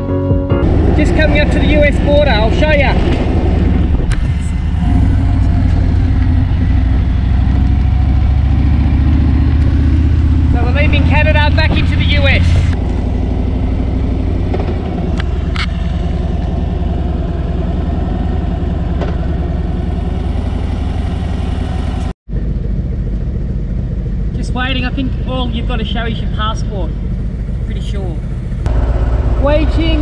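Harley-Davidson Road King's V-twin engine running steadily under way, a continuous low rumble, with muffled voices at times. The sound drops out for a moment about two-thirds of the way through.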